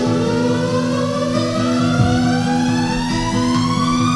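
Instrumental backing-track music building up: a rising sweep that climbs steadily in pitch over a held chord.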